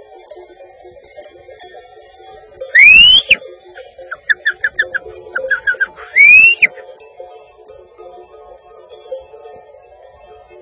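A person whistling: two loud sharp whistles that rise in pitch, about three and a half seconds apart, with a quick run of short high chirps between them, over faint background music.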